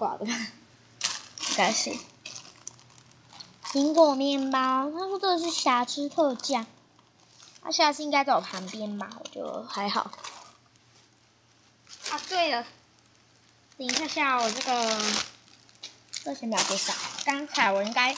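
Cellophane wrapping crinkling in short rustles as plastic-bagged squishy toys are handled, between several stretches of a young girl's voice.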